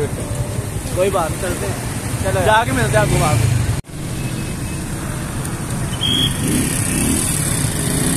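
Street traffic at a busy road junction: cars and motorcycles running and passing, a steady rumble with some voices over it in the first half. The sound drops out for an instant about four seconds in, then the traffic noise carries on.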